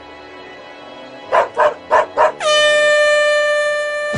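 Cartoon horn sound effect: four short blasts in quick succession, then one long held note that dips slightly in pitch as it starts and carries on steadily. It is the start signal for a race.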